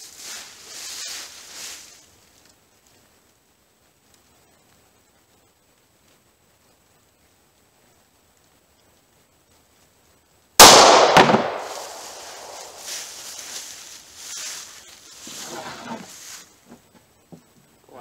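A single pistol shot from a Glock handgun about ten and a half seconds in, sharp and very loud, with a short echo trailing off over about a second.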